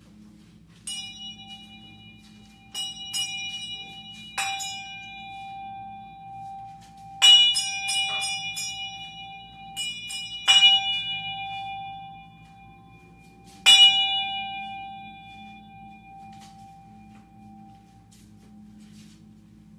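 A metal ritual bell struck or rung in about six short bursts, each a quick cluster of ringing strikes, with its clear tone sustaining between them. The loudest bursts come in the middle and near the end.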